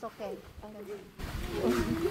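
Low, indistinct voices, with no clear words, that fade in the first second and pick up again from about a second and a half in.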